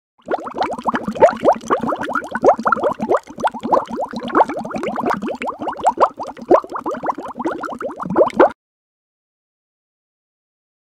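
Bubbling, plopping liquid sound effect: a dense, rapid run of short pops, each rising in pitch, which cuts off suddenly about eight and a half seconds in.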